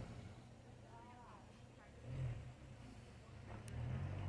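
Faint distant voices of people in the street over a steady low rumble, with one small click near the end.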